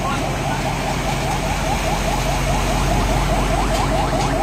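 A van's engine running as it drives through floodwater, with water surging around it and a crowd talking. A rapid chirping, about six short rising chirps a second, runs throughout.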